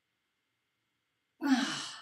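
Near silence, then about one and a half seconds in a woman lets out a loud sigh: a breathy exhale with her voice falling in pitch.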